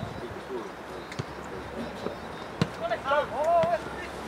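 Two sharp thuds of a football being kicked, about a second and a half apart, over the low hum of the pitch, followed near the end by players shouting to each other.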